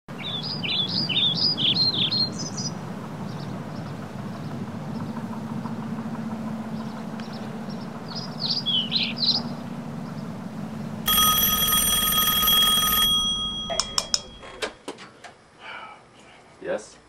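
Birds chirping in two short spells over a steady outdoor hum. About eleven seconds in, a desk telephone rings once for about two seconds, cutting in suddenly. Clicks and handling noises follow as the handset is picked up.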